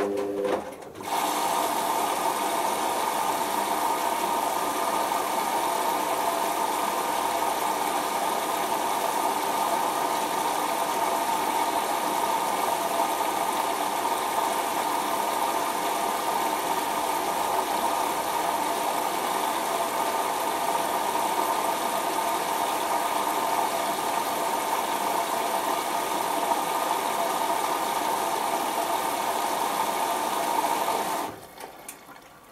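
Hoover Optima OPH714D washing machine taking in water through its inlet valve: a steady hiss of water flow that cuts in about a second in, as the drum motor's whine stops, and holds level. This is the fill that follows the load-sensing stage of the cycle.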